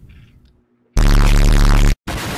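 Explosion sound effect, very loud and distorted with heavy bass. It comes in about a second in after a moment of silence and cuts off abruptly a second later.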